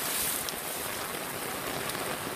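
Heavy rain pouring down, a steady even hiss with a couple of faint ticks of drops.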